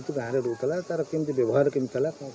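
A man speaking, talking steadily into reporters' microphones.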